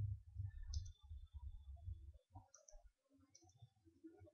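A few faint clicks from a computer keyboard and mouse as code is edited, over a low background rumble.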